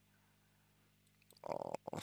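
Near silence with a faint steady low hum, then near the end a man's short hesitant "eh" as he resumes talking.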